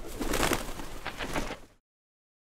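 Bird sound effect: a burst of bird sound lasting about two seconds that stops abruptly.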